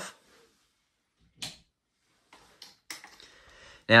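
Near quiet, broken by two short faint clicks, one about a second and a half in and one just before three seconds, with faint handling noise between them.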